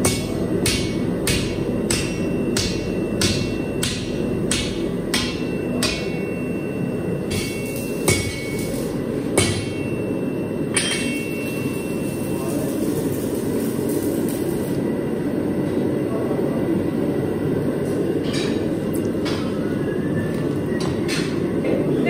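Hand hammer striking a red-hot iron bar on a steel anvil as it is forged, about two ringing blows a second. The hammering stops about halfway through, and a few single strikes follow near the end.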